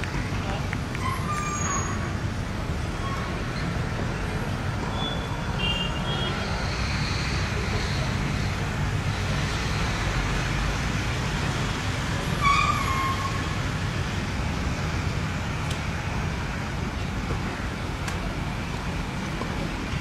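Steady outdoor background noise with a low rumble and faint distant voices. A brief pitched sound stands out about twelve and a half seconds in.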